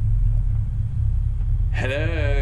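A steady low hum runs throughout. Near the end a short voice sound starts, its pitch rising and then falling.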